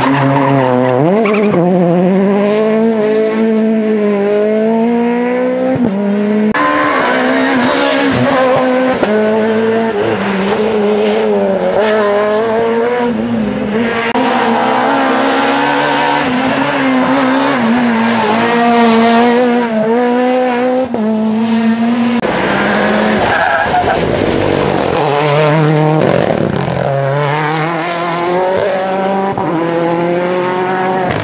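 Rally cars on a tarmac special stage passing one after another, engines revving high and rising and falling in pitch as they change gear, brake and accelerate through the corners.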